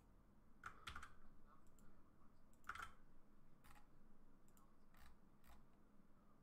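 Faint, scattered clicks of a computer keyboard and mouse, about half a dozen spread over several seconds, as text is copied and pasted.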